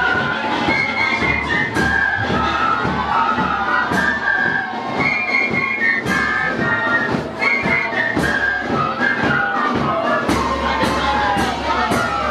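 An ensemble of young players sounding small white flutes together in a simple stepped melody, with percussive knocks keeping a beat underneath.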